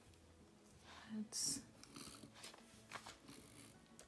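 Quiet handling of paper sticker sheets over a planner: soft rustles and light taps, with one brief, brighter papery rustle about one and a half seconds in.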